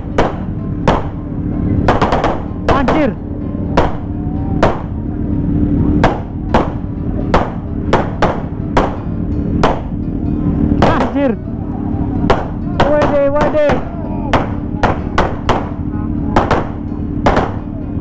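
Firecrackers going off in a long string of sharp bangs at an uneven pace, one to three a second, over a steady low drone.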